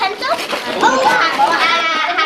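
Excited children's voices talking over one another, high-pitched, with one high voice held for about half a second near the end.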